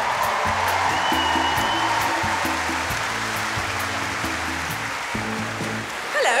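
Upbeat backing music with a repeating bass line and a steady beat, over an even wash of audience applause.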